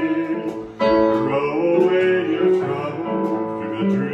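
A man singing with an electronic keyboard and a ukulele accompanying him, holding long notes; the music drops briefly just before a second in, then comes back in full.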